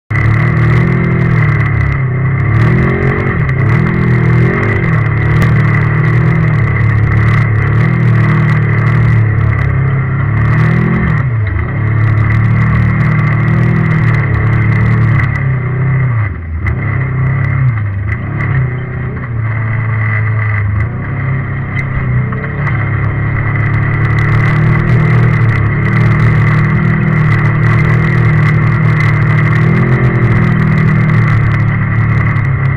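Engine of an off-road vehicle, heard on board while it drives a rough dirt trail, its pitch rising and falling with the throttle and dipping briefly a few times in the middle. A steady high whine runs along with it.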